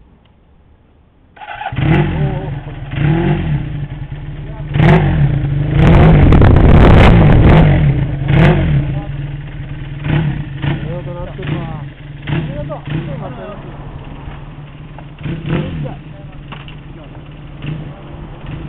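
1977 Kawasaki Z400's air-cooled 400 cc parallel-twin engine started on the electric starter, catching about a second and a half in. It is revved in a series of throttle blips, with a longer high rev about six to eight seconds in, then settles to idle with lighter blips.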